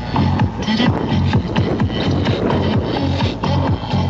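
Electronic dance music with a steady beat and deep bass, played loud outdoors through portable loudspeakers carried on the ride.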